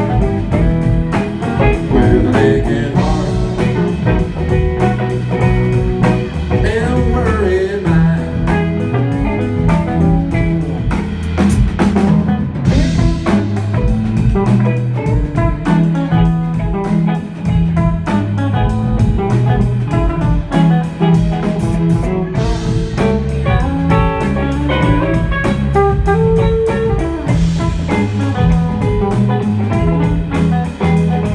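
A live band playing an instrumental break on electric guitars over a steady bass and drum beat, with lead guitar lines that include bent notes.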